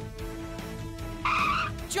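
Cartoon background music with steady held notes, cut by a short tire-screech sound effect about a second and a quarter in.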